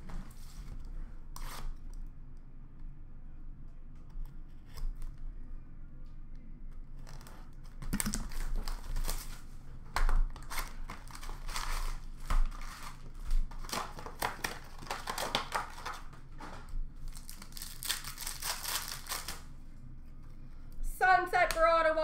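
Plastic wrapping torn and crinkled as a sealed box of hockey trading cards and its packs are ripped open: a run of rustling, tearing bursts from about eight seconds in until near twenty seconds, with lighter handling noise before. A man's voice starts near the end.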